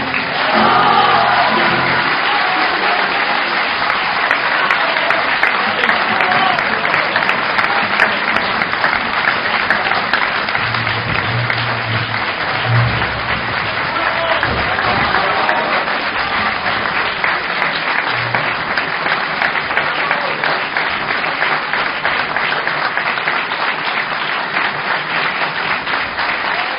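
Audience applauding steadily and loudly. The last chord of a mandolin and guitar orchestra rings out under the applause and fades in the first second or two.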